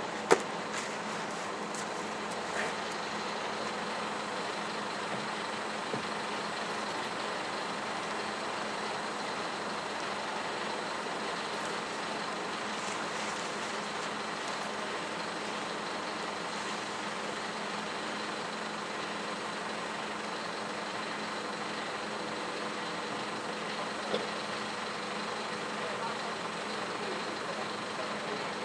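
Steady hum of a standing low-floor articulated tram's onboard equipment at rest, an even drone with a few faint steady tones running through it.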